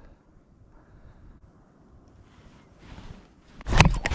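Near quiet while a lure is slowly retrieved. Near the end comes a sudden loud, rough burst of handling noise as the fishing rod is swept back to set the hook on a bass's strike, with the rod handle and reel brushing against the camera.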